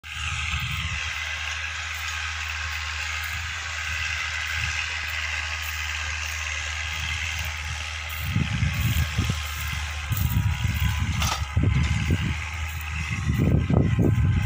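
Distant tractor engine running steadily while ploughing the field. About halfway through, gusts of wind start rumbling on the microphone.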